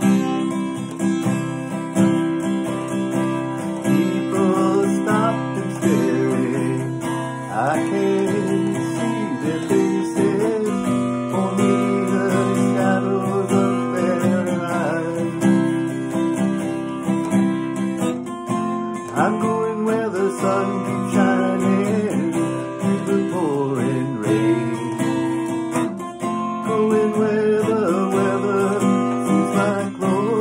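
Steel-string acoustic guitar strummed steadily in an instrumental passage, with a wordless melody line wavering over the chords at times.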